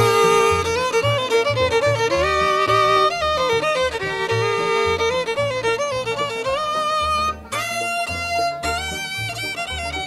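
Bluegrass fiddle playing the instrumental break between verses, with held and sliding notes, over an upright bass keeping a steady beat and strummed acoustic guitar. The fiddle pauses briefly about seven and a half seconds in, then carries on.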